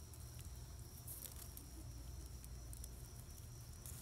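Quiet background: a steady low hum and a faint, steady high-pitched tone, with a few soft clicks.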